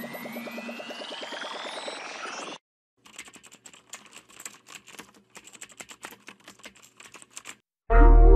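Intro sound effects: an electronic sci-fi sweep tone rising in pitch over rapid pulsing, cutting off suddenly about two and a half seconds in. After a brief silence comes a fast, irregular run of keyboard typing clicks lasting about four and a half seconds.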